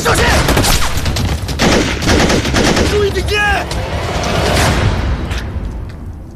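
Heavy battle gunfire: rapid automatic fire and many overlapping shots. A man shouts a little past three seconds in, and the firing dies away shortly before the end.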